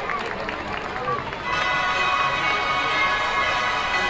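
Spectators' voices and chatter along a parade route, then parade music comes up about a second and a half in, with steady held notes.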